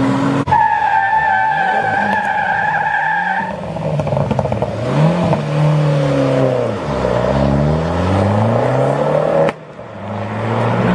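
A high, steady tyre squeal for about three seconds, then a Fiat 500 Abarth's small turbocharged four-cylinder engine revving up and down several times as the car pulls away.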